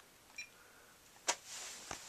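A few short, sharp clicks over faint room tone: one right at the start, a sharper one a little past the middle and another near the end.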